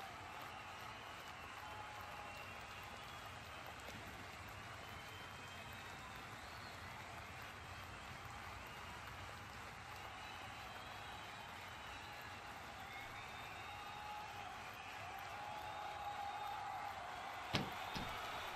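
Faint, steady background noise with distant, indistinct voices, and one short click near the end.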